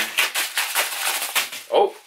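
Pocket knife blade slicing along the top of a padded paper mailer: a fast run of crackling, tearing clicks for about a second and a half.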